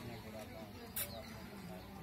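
A man's voice, faint, reciting a dua (supplication) over a seated group, with one sharp click about a second in.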